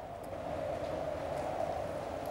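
A steady, even drone with a low rumble beneath it, unchanging throughout.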